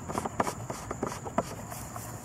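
A few sharp clicks and light rubbing from hands working the mower's control cable and levers, the loudest clicks about half a second in and near the end, over a faint steady chirring of insects.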